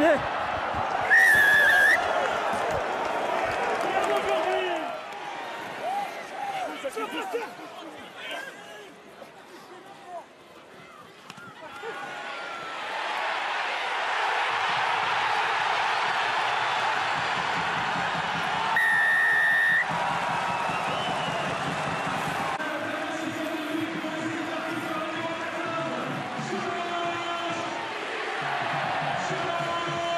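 Rugby stadium crowd noise with a referee's whistle blown twice, each blast about a second long: once right at the start and again a little past the middle. Match commentary voices come between the blasts, and the crowd grows louder from about halfway through.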